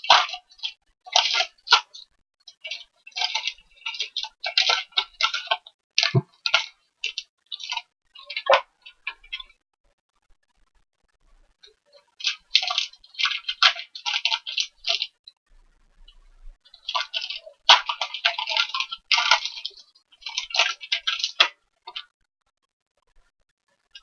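Plastic wrappers of trading card cello packs crinkling and tearing as they are opened and handled, in irregular bursts of crackle with short pauses, plus a soft knock about six seconds in.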